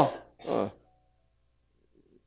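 A man's drawn-out 'ah' trailing off, then a brief throat clearing about half a second in.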